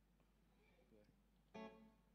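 Near silence with a faint hum, broken about one and a half seconds in by a single short plucked electric guitar note.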